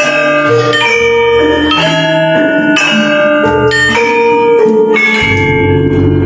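Javanese gamelan ensemble playing: bronze keyed metallophones and pot-gongs struck in a steady pulse of about one note a second, each note ringing on into the next. A deep low note comes in about five seconds in.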